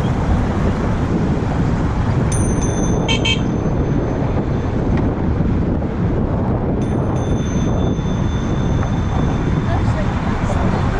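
Wind rushing over the microphone with the rumble of a bicycle riding across a wooden bridge deck, and pedestrians talking around it. A thin high ringing tone sounds briefly about two seconds in, and again about seven seconds in.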